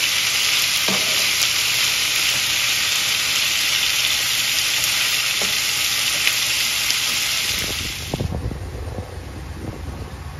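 Chicken fajitas (chicken strips, onions and bell peppers) sizzling steadily on a hot flat griddle as a spatula stirs them, with a few faint ticks of the spatula. About eight seconds in the sizzle cuts off suddenly and low wind buffeting on the microphone takes over.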